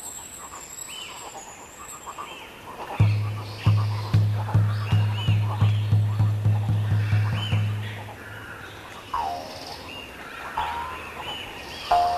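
Documentary soundtrack music: a deep, drum-like pulse starts about three seconds in and repeats faster and faster for about five seconds before stopping. Faint short chirps from forest creatures run underneath.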